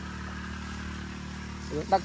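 Small engine of a backpack power sprayer running steadily at constant speed, an even low hum, as it mists spray over the rice. A man starts speaking near the end.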